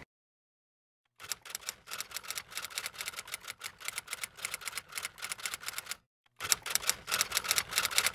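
Typewriter sound effect: a rapid run of key clicks starting about a second in, a short break, then a second run near the end.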